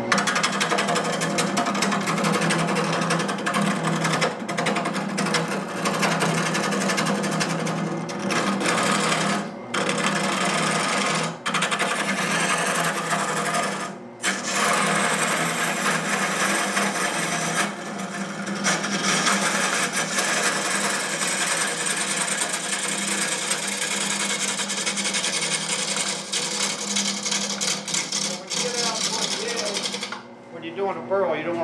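A wood lathe cutting with a gouge into a spinning wood blank: a continuous cutting noise over the lathe's steady hum, broken by about four short pauses in the first twenty seconds. The gouge is taking roughing cuts to hog out waste wood.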